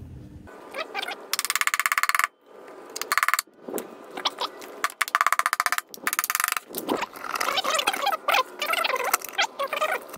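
Knocks and rattling on the engine's metal clutch cover as it is struck and worked loose from its gasket. Three bursts of very rapid buzzing clicks, the longest about a second in, with scattered knocks and scraping between them.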